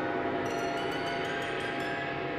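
A contemporary chamber ensemble playing held, ringing tones. A quick run of light, high-ringing metallic percussion strikes starts about half a second in and runs to near the end.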